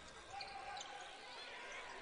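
Faint basketball game sound: a ball being dribbled on a hardwood court under quiet arena background.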